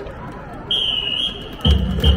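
Stadium cheering over crowd noise: a long, steady whistle blast starts about a third of the way in. Near the end a cheering beat starts, with deep drum thumps about two a second, each paired with a short whistle blip.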